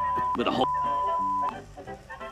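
Censor bleep: one steady high beep covering a man's words, broken for a moment about a third of a second in by a snatch of voice, then beeping again until it cuts off at about a second and a half.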